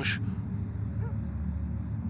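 Night ambience: a steady low hum under a faint, steady high chirr of crickets.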